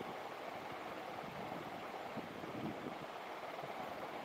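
Steady, even rushing noise with faint soft knocks in the low end.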